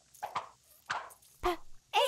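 Short cartoon sound effects from animated letter blocks hopping out of and into a line: three quick swishes and taps about half a second apart, one with a soft thud. Near the end a loud falling, pitched cartoon sound begins.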